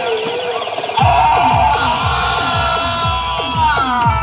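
Loud DJ sound system playing a Meena geet dance song: a wavering melody, then a deep electronic bass beat comes in about a second in, about four beats a second, each beat dropping in pitch.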